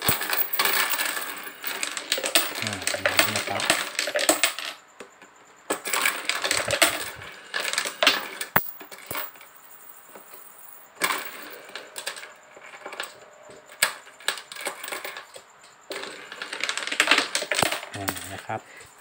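Baht coins clattering and jingling in the rotating hopper bowl of a homemade automatic coin sorter as a hand stirs them to feed the slots. The clatter comes in four bursts with quieter gaps between.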